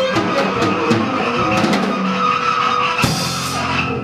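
Live small jazz band of saxophones, a brass horn, electric bass guitar and drums playing the closing bars of a tune, with held horn notes and a loud hit about three seconds in.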